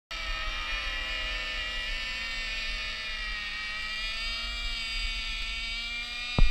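Motors of two radio-controlled model warplanes flying overhead in a combat round: a steady high buzz made of several tones whose pitch drifts slightly as the planes manoeuvre. A low rumble of wind on the microphone sits underneath.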